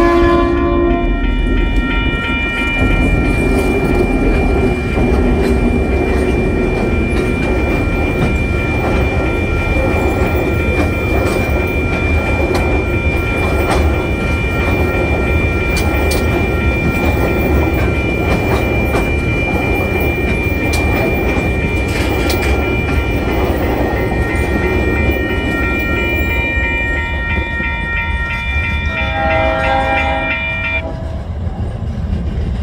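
A TasRail coal train passing close by. A diesel locomotive horn blast ends about a second in. Then comes a long, loud, steady rumble of coal hopper wagons rolling past, with wheel clicks over the rail joints and a steady high ringing tone above it.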